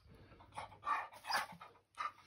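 Dog panting close to the microphone: three short breathy puffs in quick succession.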